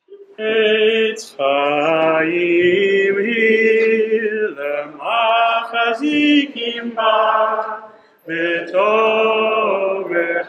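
Hebrew liturgical singing for returning the Torah to the ark, led by a male voice in long held phrases with short breaks between them.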